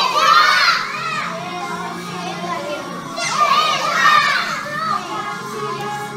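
A group of young children shouting and singing along in a room, loudest in two bursts at the start and again about three seconds in, over a song playing underneath.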